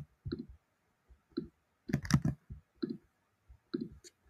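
Separate clicks of a computer keyboard and mouse, fairly faint, with a quick run of three or four about two seconds in.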